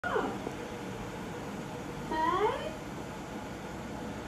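A cat meowing twice: a short call falling in pitch at the very start, then a longer call rising in pitch about two seconds in.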